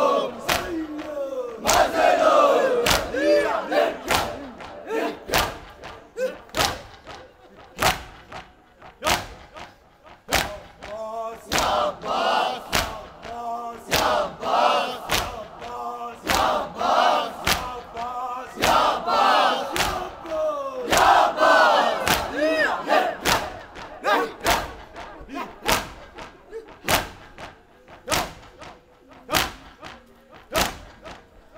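A crowd of Shia mourners beating their chests in unison (matam), a steady slap about every two-thirds of a second. In several stretches the crowd's voices rise in chanted cries over the strokes.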